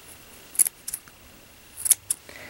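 Scissors snipping through yarn tails: two crisp snips, about half a second in and near the end, with a fainter click between.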